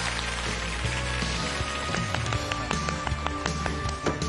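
Studio audience applauding steadily, with music playing under the clapping.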